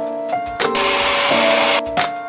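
A cordless handheld vacuum running for about a second, a rushing noise with a high steady whine, starting and cutting off abruptly over background music.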